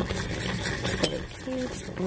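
A spoon stirring thick cornmeal porridge in a clear bowl, scraping through it with one sharp clink against the bowl about halfway through.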